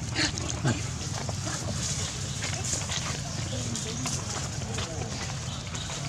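Long-tailed macaques giving short, high squeals and screeches as they squabble, with one falling call about half a second in, over a steady low hum.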